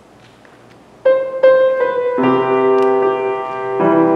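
Grand piano played solo: after about a second of quiet, a few single melody notes sound, then full chords with bass notes come in a little after two seconds.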